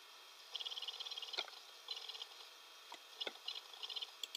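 Faint short runs of rapid ticking from a computer mouse, three of them, with a few single clicks between.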